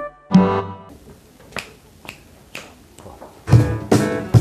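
Three finger snaps about half a second apart counting in, then about three and a half seconds in an acoustic guitar and a cajon start playing together, the cajon giving regular low bass thumps. Just before the snaps a chord rings out and dies away.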